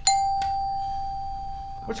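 Electronic tone of a quiz-show buzzer system: a single steady tone that starts sharply and fades slowly, with a click about half a second in.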